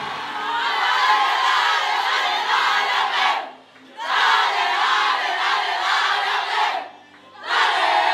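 A women's football team chanting together in a victory celebration, in loud shouted phrases broken by two short pauses, about three and a half and seven seconds in.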